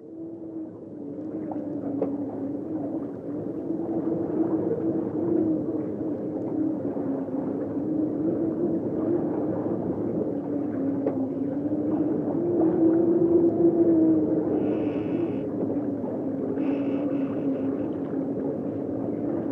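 A low, droning tone fades in from silence and holds, its pitch wavering slowly up and down with fainter overtones above. Near the end two brief, higher, hissing sounds come in. It is the atmospheric opening of a track on a 1997 black metal album.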